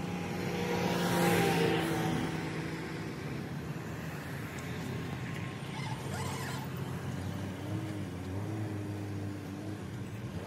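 Mahindra Thar 4x4's engine working under load as the vehicle pushes into deep loose soil, rising in pitch and loudness about a second in, then holding a steady drone as the tyres dig in.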